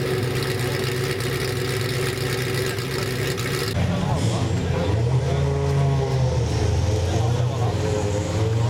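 A motor vehicle engine running steadily. After an abrupt change just before the middle, engine sound rises and falls slowly in pitch, with voices in the background.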